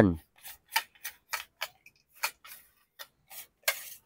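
Light, irregular clicks and taps from handling a telescopic fishing rod, its metal butt cap and sections knocking and sliding, with a brief scrape near the end.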